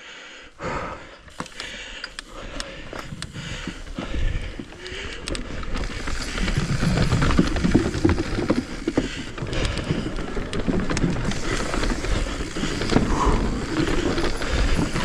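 Full-suspension Commencal mountain bike rolling down a forest trail. Scattered clicks and knocks from the bike and the trail come first. From about six seconds in there is a louder, steady rumble and rattle as the tyres run over the planks of a wooden boardwalk.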